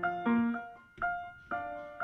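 Solo piano playing the opening of a slow song, with no voice. Notes and chords are struck about every half second, each ringing and then fading.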